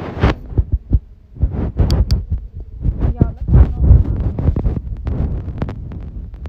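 Handling noise on a handheld phone's microphone: irregular low thumps and rumbles, with a couple of sharp clicks about two seconds in.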